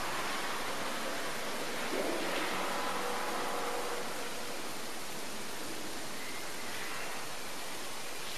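Steady hiss of room tone and recording noise, with no distinct sound event.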